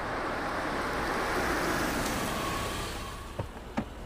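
Car noise on a street: a steady hiss of engine and tyres that swells in the middle and then fades. Near the end come two sharp clicks as a car door is unlatched and opened.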